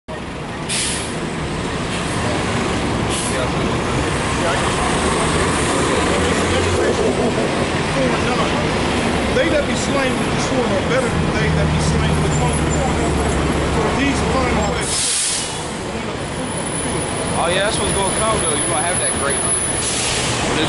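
City transit buses running at the curb, with a low engine hum and several short, sharp hisses of air brakes releasing: about a second in, around three seconds and around fifteen seconds. Voices carry underneath.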